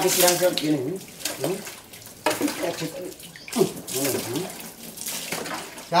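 Water poured from a plastic bucket splashing onto a Vespa scooter in several separate dumps. A woman's voice exclaims in between.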